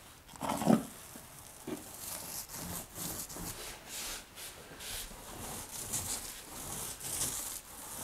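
Paint roller loaded with thick Laticrete Hydro Ban liquid waterproofing membrane being pushed over cement board, a wet rubbing swish with each of a series of strokes. A brief louder noise comes under a second in.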